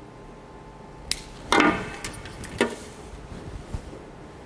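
A plastic cable tie snipped with diagonal cutters, a sharp click about a second in. This is followed by a louder knock as the cutters are set down on the tabletop, then another knock as the plastic ties are handled.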